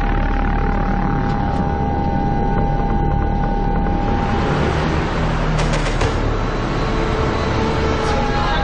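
Loud, dense rumbling sound effects with a steady high tone through the first half and a few sharp hits about six seconds in: the dramatic soundtrack of a war-themed report montage.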